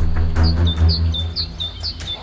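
Background film music with sustained deep bass notes. Over it, a high two-note chirp, the first note higher, repeats evenly about twice a second.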